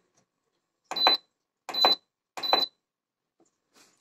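Redmond RMC-M38 multicooker's control panel beeping three times in quick succession, once for each press of its minus button as the cooking time is stepped down.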